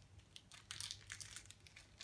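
Small plastic toy packaging crinkling faintly in the hands as it is worked open, in scattered crackles that are loudest about a second in.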